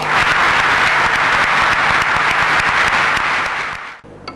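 An audience applauding: a dense, steady patter of many hands clapping that fades away near the end.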